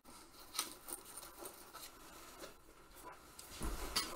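Faint clinking and rustling of a mail shirt's metal rings as the wearer moves close to the microphone, with scattered light ticks and a low bump near the end.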